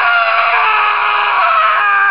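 One long, loud, high-pitched human scream held through the whole stretch, its pitch wavering only slightly.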